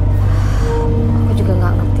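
Background drama music: a steady low drone with long held tones and short gliding notes. A short hiss-like rush of noise comes near the start.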